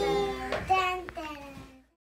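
A group of young kindergarten children calling out together in long, drawn-out sing-song voices, several notes overlapping. The sound fades out near the end.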